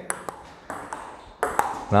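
Table tennis ball being hit in a practice rally: a few sharp clicks of the celluloid ball off the rubber-faced paddles and the tabletop, under a second apart.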